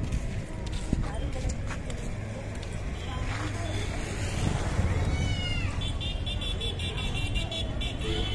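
Busy outdoor street ambience: voices of passers-by and motor traffic over a steady low rumble.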